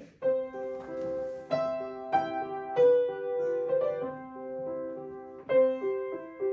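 A grand piano being played: a slow, sustained melody over lower accompanying notes, with the notes coming quicker near the end.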